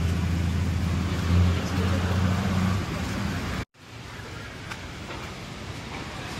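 A motor vehicle engine running close by, a steady low hum over street noise. The sound cuts off abruptly a little past the middle, leaving a fainter steady hum.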